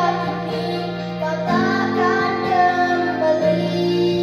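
A young girl singing a song in Indonesian into a microphone over sustained backing music, whose low chords change twice.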